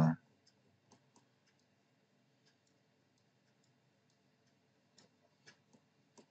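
Computer mouse clicking faintly: a few scattered clicks early on, then a quicker group of clicks near the end.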